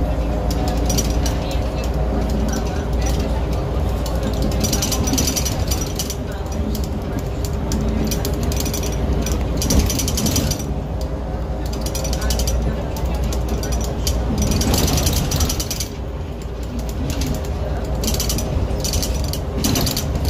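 Inside a 2002 Jelcz 120M/3 city bus on the move: a steady engine drone, with clusters of rattling and clicking from the bus's body and fittings coming and going every second or so.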